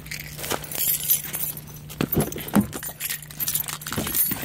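Car keys jingling and clinking in a hand, in a quick irregular run of small metallic strokes, over a steady low hum.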